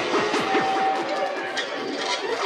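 Progressive psytrance track in a breakdown with no kick drum: a run of quick falling synth sweeps under a held high synth note.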